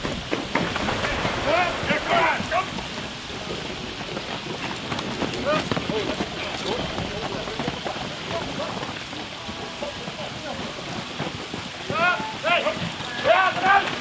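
A pair of horses pulling a marathon carriage through a water obstacle: hooves and wheels splashing through the water, with a steady rushing haze. Short shouted calls come near the start and again near the end.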